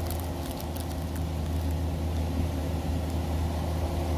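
A steady low mechanical hum with several steady low tones in it, without a break.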